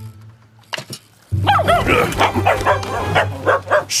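Cartoon dog yapping in a rapid run of short, pitch-bending yips, starting about a second in, over a low steady hum.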